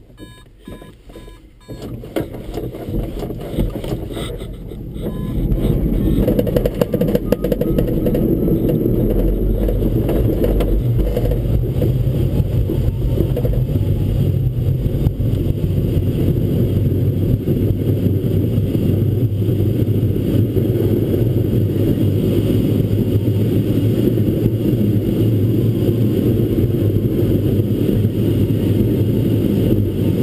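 A few electronic beeps in the first second and a half, then the rushing noise of a Mini Nimbus sailplane's takeoff and climb. A deep rumble and airflow build over the first few seconds and then hold steady and loud in the cockpit.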